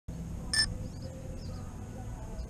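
A single short electronic beep, made of a few steady high tones, about half a second in, over a low steady rumble.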